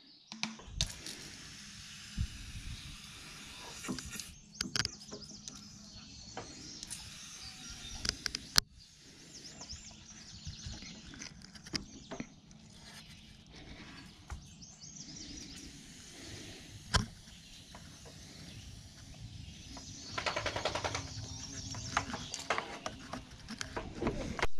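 Quiet outdoor background with faint bird chirps and scattered clicks and knocks from handling a pump garden sprayer, with about two seconds of hissing near the end.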